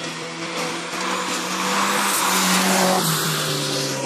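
A race car's engine revving hard as it comes through a corner at speed, its pitch climbing and then dropping off near the end as the driver lifts. The tyres hiss and skid on the wet asphalt, loudest about two to three seconds in.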